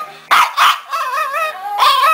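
A Pomeranian gives two short, sharp barks, then breaks into whining, howling cries that waver up and down in pitch. He is agitated: "mad".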